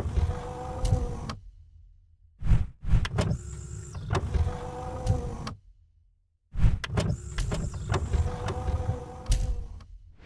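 A mechanical whirring sound effect for an intro animation, repeating: each time a few sharp clicks, then a steady whirring hum lasting about three seconds, with short silent gaps between.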